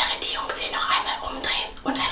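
A woman speaking in a whisper, in short bursts of breathy, hissing syllables.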